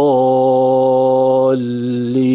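A male reciter chanting Quranic recitation in a long, steady held note, then moving to another sustained syllable about one and a half seconds in.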